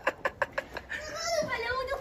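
Children at play: a run of quick light taps in the first second, then a child's drawn-out, high vocal cry that slides up and down in pitch through the second half.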